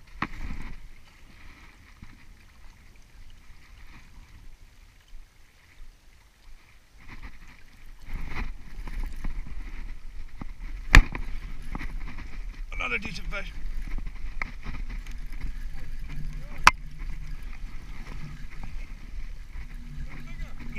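Wind on the microphone and water along the rocky shore, growing louder and more rumbling about eight seconds in, with two sharp clicks from handling the spinning rod and reel, one about halfway and one near the end.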